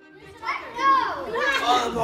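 A young girl's voice, talking in high-pitched bursts from about half a second in. The faint tail of a bowed-string music track fades out at the start.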